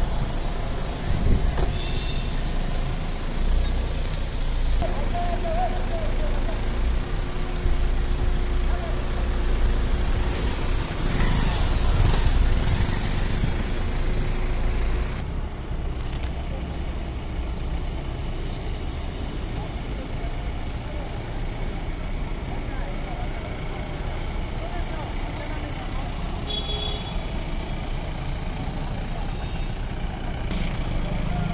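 Road traffic: cars, SUVs and motor scooters passing with engines running, over indistinct voices. The noise drops a little about halfway through, and near the end there is a brief high-pitched tone.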